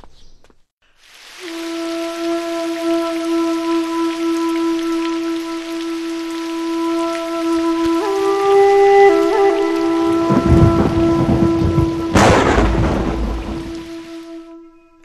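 Heavy, steady rain. Thunder rumbles low from about ten seconds in, then a loud thunderclap breaks about twelve seconds in and rolls away.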